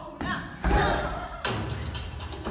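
A heavy low thud, then a sharp percussive hit as rhythmic, drum-led music starts.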